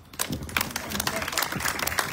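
Audience applauding, starting a moment in and keeping on, with a few voices talking faintly under it.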